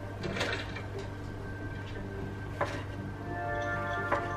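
A kitchen knife slicing through a mushroom onto a wooden chopping board: two short cuts, about half a second in and about two and a half seconds in. Background music with steady sustained notes plays throughout.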